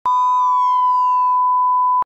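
Loud, steady, high electronic beep from an intro sound effect, held at one pitch for two seconds and cut off abruptly. A fainter falling tone slides down beneath it during the first second and a half.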